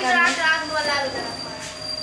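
A person's voice speaking briefly in the first half, over a thin, steady, high-pitched whine that fades out near the end.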